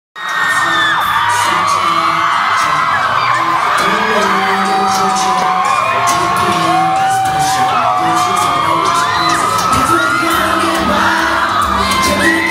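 Live pop song with a male lead vocal and heavy bass through a concert PA, recorded on a phone whose microphone is overloaded by the bass. A crowd of fans screams and whoops over the music.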